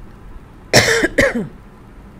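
A person coughs twice in quick succession about a second in, two short coughs with a falling voiced tail.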